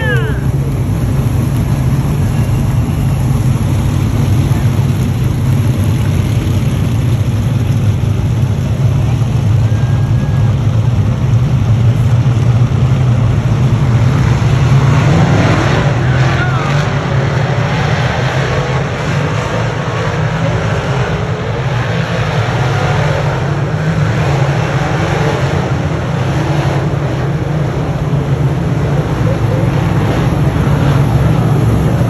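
A field of dirt modified race cars running together on the track, the loud, steady drone of many V8 engines under power.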